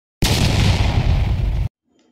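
A loud explosion-like sound effect: a noisy blast that starts sharply about a fifth of a second in, runs for about a second and a half, and cuts off abruptly.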